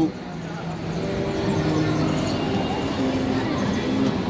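City street traffic: motor vehicles, including a bus, running past with a steady hum and no single loud event.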